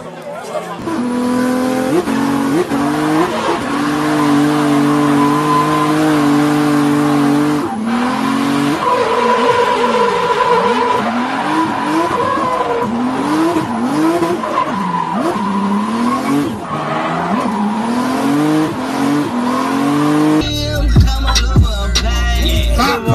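Rally and race car engines at high revs: first one engine held high and steady, then from about eight seconds in a run of rising revs and gear changes with tyre squeal and skidding. In the last second and a half, music with a heavy bass comes in.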